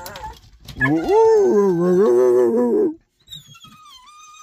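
A dog howling: one long, wavering howl starting about a second in and lasting about two seconds, then a thin, high whine falling in pitch near the end.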